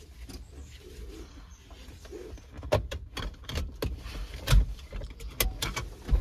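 A seatbelt is pulled across and buckled in a truck cab: a scatter of clicks and knocks through the second half, the loudest about halfway through.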